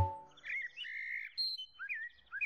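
Small bird chirping in a string of short calls, some sweeping quickly up and down in pitch, with one longer warbling call about a second in.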